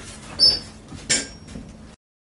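Two brief small noises, a short high squeak about half a second in and a short rustling scrape about a second in, then the sound cuts off abruptly to silence.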